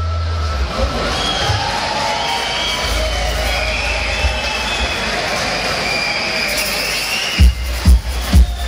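Live rock band playing a slow, held passage of sustained bass and keyboard tones over crowd noise, with a heavy drum beat kicking in near the end at about two beats a second.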